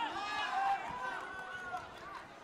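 Voices shouting in a sports hall during a taekwondo bout, several calls overlapping, with one long held shout in the middle.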